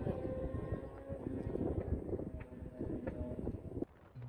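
Motorcycles riding down a mountain pass, their engines running as a fluctuating rumble; the sound cuts off abruptly just before the end.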